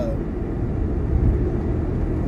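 Steady low rumble inside a car's cabin with the engine running.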